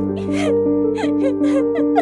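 A woman sobbing in short, catching breaths, several times over, with soft background music of held notes underneath.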